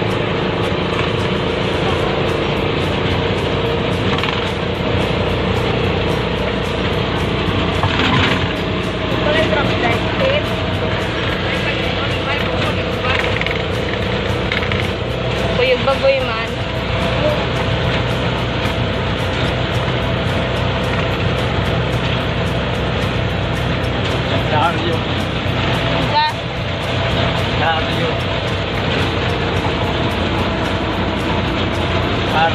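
Motorcycle tricycle engine running steadily while moving along a road, with road noise.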